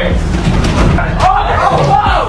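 Voices shouting inside the cargo box of a moving U-Haul box truck, over a steady low rumble from the truck, with scattered thuds and bangs.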